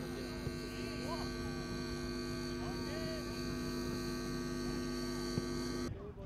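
Steady electrical hum with a high buzz on the recording. It starts and stops abruptly with the shot, and a few faint sounds are barely audible underneath.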